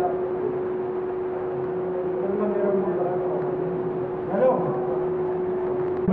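Indistinct background voices of people talking, over a steady hum and room noise.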